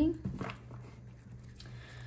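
Handling noise: a low thump just after the start, then a few faint taps and rustles as a tarot card deck is lifted off a table, over a steady low hum.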